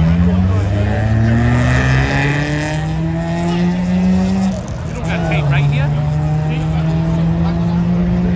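Car engine held at high revs, its pitch climbing slowly for about four seconds, dipping briefly, then held high again, with tyre squeal about two seconds in: a burnout, the tyres spinning in a cloud of smoke.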